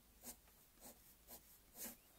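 Fineliner pen drawing quick strokes on watercolour paper, about four faint scratches as whisker lines are flicked outward.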